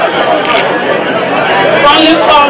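Voices and chatter of a crowd talking at once in a large room, with no single clear speaker.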